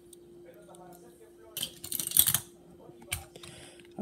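Handling noise close to the microphone: a few light clicks and a brief rustling scrape about halfway through, as a small die-cast toy car and the phone holding the camera are handled.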